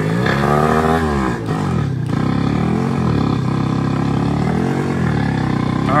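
A moped's small engine running rough, its revs surging up and falling back several times as it bogs down and threatens to stall.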